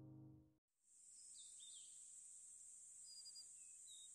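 Near silence: a held chord of background music fades out about half a second in, then a faint steady high hiss with a few faint, short chirps.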